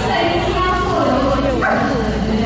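A small dog yipping and barking among a crowd of chattering voices.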